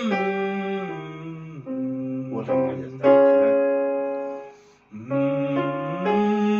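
Electronic keyboard playing chords: a few lower chords step down over the first couple of seconds, then a loud chord about three seconds in fades almost to silence, and another chord starts just after five seconds.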